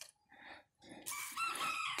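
A rooster crowing once, a call about a second long that starts halfway through and sits well below the level of nearby speech.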